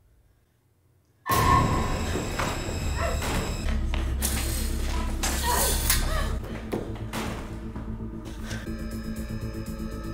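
Horror film soundtrack: near silence, then a little over a second in a sudden loud music hit that runs on as a dense score, settling into steady held tones with a faint pulse near the end. Heavy breathing from a character is in the mix.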